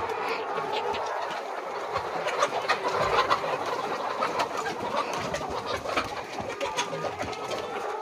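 A large flock of brown layer hens clucking all together in a steady dense din, with scattered sharp clicks through the middle seconds.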